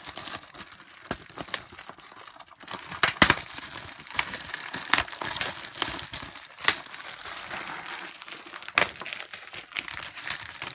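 Match Attax trading-card multi-pack packaging being handled and opened: plastic and packet wrappers crinkling, with a few sharp rips and crackles spread through.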